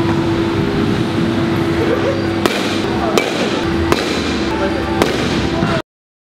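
Four sharp cracks of balls being struck in a batting-cage hall, spaced roughly a second apart, over a steady hum and background din with faint voices; the sound cuts off suddenly near the end.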